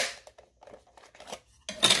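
Plastic battery door of a FrSky Taranis QX7 radio transmitter unlatching with one sharp click, followed by a few faint light plastic clicks as the cover is worked loose.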